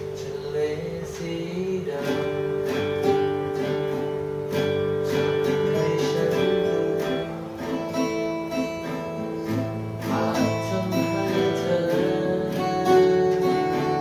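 Two acoustic guitars, a steel-string cutaway and a nylon-string classical guitar, playing together: strummed chords in a steady rhythm with ringing notes.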